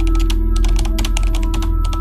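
Typing sound effect: a rapid, uneven run of keyboard key clicks as on-screen text is typed out, over a steady ambient music bed.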